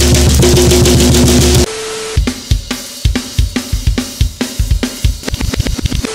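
A drum kit being played hard: a dense burst of fast beats with cymbals for about the first second and a half, then separate drum strokes with cymbal wash that come quicker toward the end.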